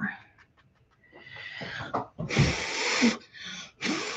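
A person blowing hard through pursed lips onto a wet puddle of watercolour paint to spread it into splatter tendrils (blow painting). There are several gusts of breath: the longest and loudest starts a little after two seconds in, and two shorter ones come near the end.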